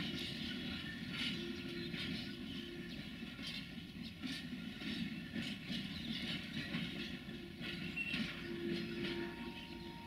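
Freight train of container wagons rolling slowly past, with a steady rumble and scattered clicks from the wheels on the track.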